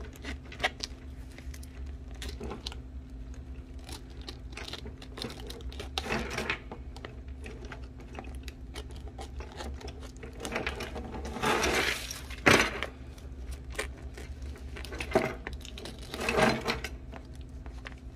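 Scissors snipping through a plastic poly mailer and its tape: repeated small clicks of the blades with plastic rustling, louder crinkling bursts twice in the second half. A low steady hum runs underneath.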